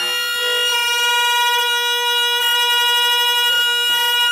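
Saxophone and clarinet holding one long, steady note together, a reedy drone rich in overtones with no change in pitch.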